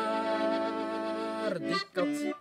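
Button accordion holding a steady chord under a man's long held sung note, which ends about a second and a half in. The next sung words follow just before the end.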